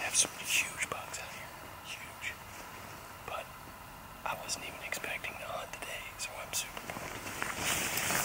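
Soft whispering mixed with the swish and rustle of a camouflage hunting jacket being pulled on, in short scattered bursts.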